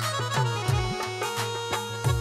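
Instrumental Saraiki folk music with no singing: held, reed-like melody notes over a steady drum beat whose deep strokes fall in pitch, two or three a second.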